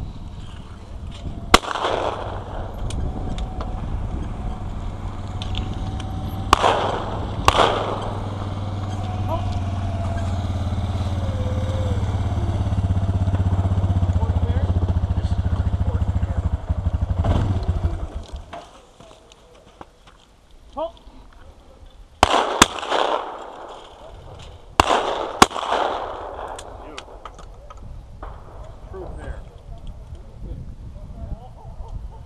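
Shotgun shots at clay targets: about eight sharp reports, several in pairs about a second apart, each with a short echo. A steady low rumble runs under the first half and cuts off after about 18 seconds.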